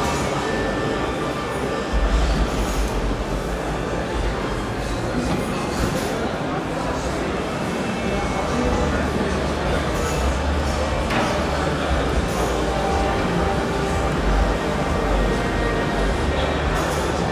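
Steady din of a busy exhibition hall: background crowd chatter and music over a low rumble. The Rolls-Royce Dawn's fabric roof retracting adds little sound of its own, fairly silent.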